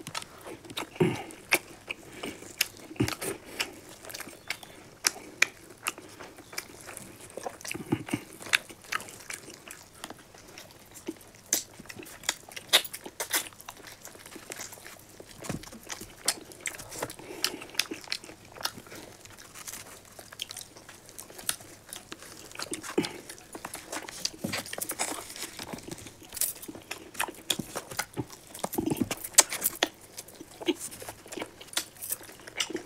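Two people chewing and biting into tandoori chicken, with irregular sharp smacks and clicks of mouth sounds, plus the odd tear of meat by hand.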